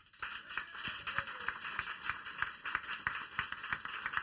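Audience applause: many pairs of hands clapping irregularly, starting abruptly and keeping up steadily, in welcome of a panellist just introduced.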